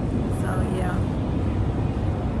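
Steady low rumble of a busy airport terminal hall's background noise.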